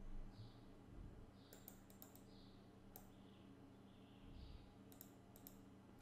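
Faint, scattered clicks from a computer keyboard and mouse over a low, steady hum.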